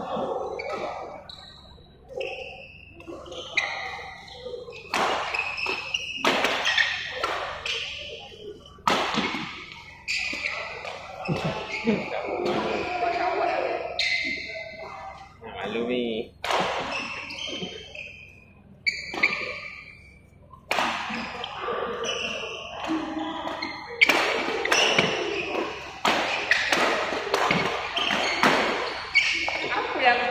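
Doubles badminton rally: repeated sharp racket strikes on the shuttlecock and knocks of footsteps on the court, mixed with players' voices, echoing in a large hall.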